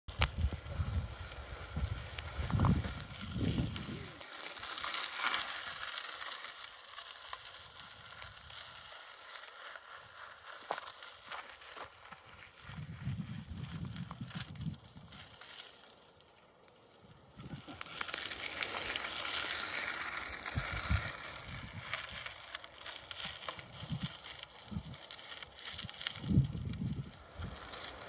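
Mountain bike riding over a dirt singletrack: tyres rolling on dirt with scattered clicks and rattles from the bike, and wind gusting on the microphone in low rumbles at the start and again near the end.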